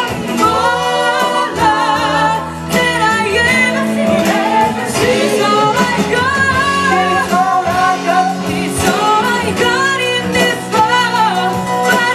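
Live soul band: several singers singing together with vibrato over band accompaniment of bass, drums and horns.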